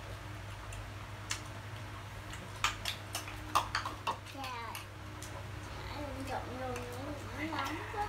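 Chopsticks tapping and clicking against bowls as a family eats, a few sharp clicks in the first half, over a steady low hum. Soft voices come in during the second half.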